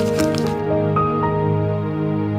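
Calm background music of held, steady notes. A short crackling, squishy noise sits over it for the first half second, then the music carries on alone.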